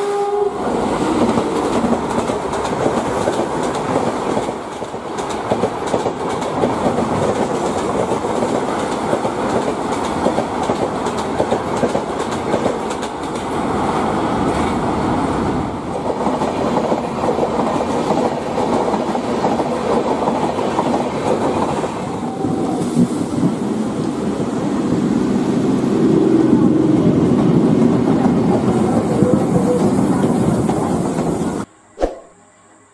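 A series of electric trains passing close by at speed, wheels clattering over the rail joints, with a continuous rumble that changes abruptly at several points. A short horn note sounds about two-thirds of the way through.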